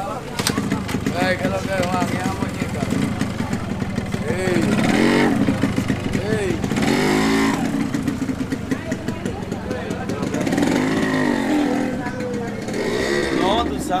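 A small motorcycle engine running steadily close by, under several people's voices talking at once.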